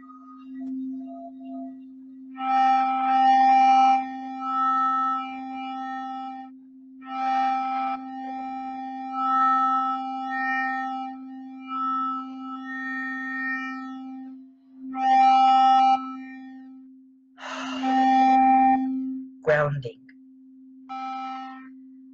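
A frosted crystal singing bowl rubbed around its rim, holding one steady low tone. Over it, a woman's voice tones long sustained vowel notes of a few seconds each, with short breaks between them. A few brief spoken syllables come near the end.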